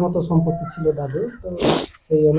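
A man speaking, with a short hissing burst near the end.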